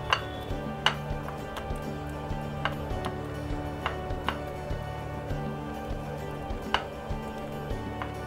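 Background music with steady held tones, over which come a few irregular sharp clicks of fingers knocking against a ceramic plate as a spice paste is mixed by hand into pieces of fish.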